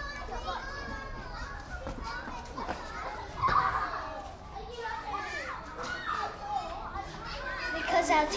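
Many children's voices at once, chattering and calling out as a group of children play, with no single voice clear; it swells louder for a moment about three and a half seconds in.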